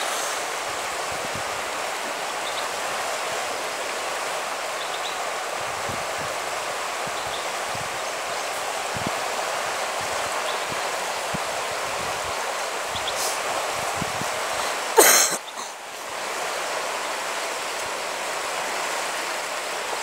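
Steady rushing of the Arkavathi River in flood, its fast brown water overflowing its banks. A brief loud burst of noise comes about fifteen seconds in, and the water sound dips for a moment after it.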